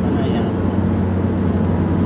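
Steady road and engine noise inside a moving car's cabin at highway speed: a low hum over an even tyre rumble.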